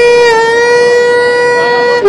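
Intro music: a saxophone holding one long, loud note, its pitch dipping slightly just after it begins.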